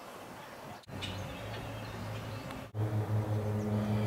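Faint outdoor background noise in short segments broken by abrupt dropouts, with a steady low hum that gets louder in the last second and a half.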